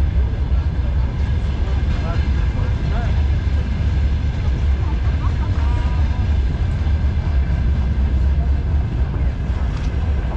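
Open-air market background: a steady low rumble throughout, with faint voices of people talking at a distance.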